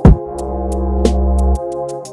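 Dark UK/NY drill instrumental beat at 120 BPM. A heavy 808 bass note hits right at the start and holds for about a second and a half under a sustained dark synth melody, with sparse hi-hat ticks on top.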